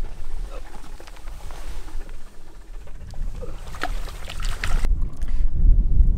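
Wind rumbling on the microphone, growing stronger near the end. Over the middle come a few short knocks and splashes as a redfish is let go over the side of the boat into the water.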